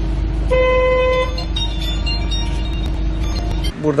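A car horn sounds once, held for just under a second, over a steady low rumble heard from inside a car.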